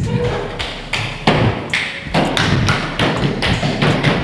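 Hands knocking on wooden classroom desks in a steady beat, about three knocks a second.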